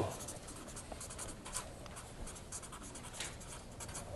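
Faint, irregular scratching strokes of someone writing on a board in a small room.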